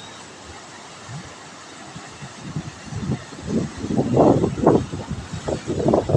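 Wind buffeting the phone's microphone in irregular gusts that start about halfway through and grow stronger, over a steady rushing hiss.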